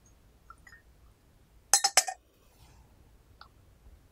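Teaware clinking: three quick, sharp clinks with a short ring about two seconds in, and a few faint clicks before and after.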